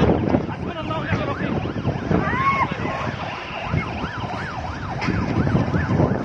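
Emergency vehicle siren sounding a fast rising-and-falling wail, about two to three cycles a second, over a dense noisy background.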